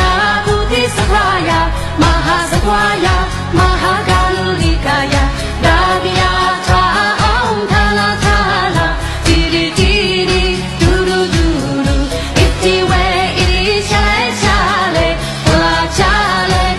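A woman singing a pop-style rendition of a Buddhist chant to Guanyin over a backing track with a steady beat.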